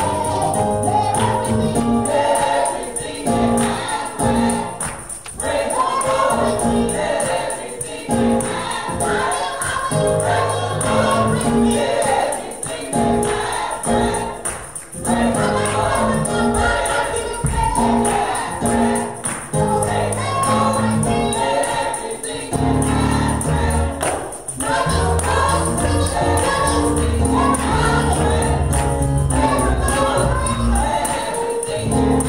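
A small gospel vocal group singing in harmony into microphones over a keyboard accompaniment, with hand claps.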